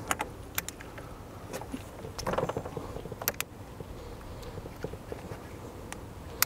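Scattered clicks and light metallic rattles of an AC manifold gauge set's low-side (blue) hose coupler being worked onto the low-side service port, over a low steady rumble.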